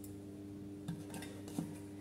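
Enamel storage box and its lid handled, giving two faint light clicks about a second apart over a low steady hum.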